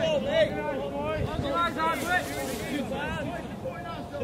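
Several voices shouting and calling over one another, with no single clear word: players and spectators on a football pitch.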